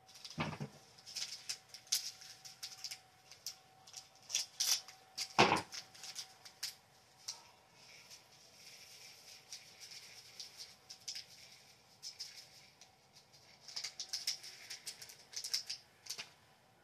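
Tiny plastic diamond-painting beads rattling and pattering as they are poured through a small plastic funnel into a bottle and handled, in clustered bursts of fine clicks, busiest in the first seven seconds and again near the end. Two sharp knocks stand out, about half a second and five and a half seconds in.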